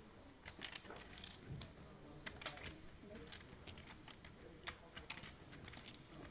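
Faint, irregular clicking of poker chips handled on the table as a bet goes into the pot, several small clicks a second with a few short clusters.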